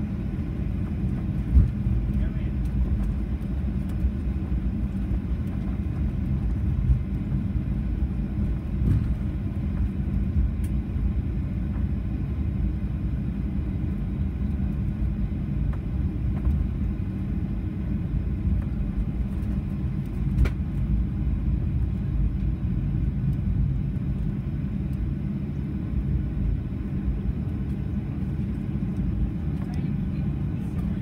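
Cabin noise of a Boeing 737-800 taxiing, heard from a seat over the wing: the CFM56 engines at idle and the gear rolling make a steady low rumble. A few brief knocks break it, the sharpest about twenty seconds in.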